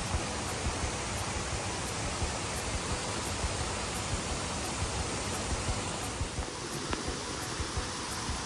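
Rushing water: a fast, shallow creek running over rocks, a steady even rush.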